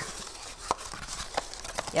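Handling of a brown paper packing sleeve as a small potted plant is pulled out of it: soft rustling with a few light knocks.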